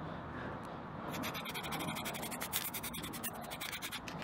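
Welding arc crackling in fast, irregular pops as the hole in a steel plough disc is welded up. The crackle starts about a second in.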